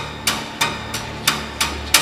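Sharp, evenly spaced knocks, about three a second, like hammer blows or chopping; the last one is the loudest.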